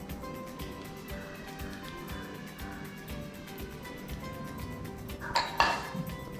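Background music with held notes and a steady beat. Near the end, a metal cooking pan clatters twice in quick succession, loudly, as it is set down on the counter.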